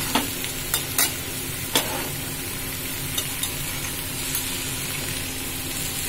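Bitter gourd, onion and potato slices sizzling steadily in oil in a pan on low flame, with a few sharp clicks of a metal spatula against the pan in the first two seconds.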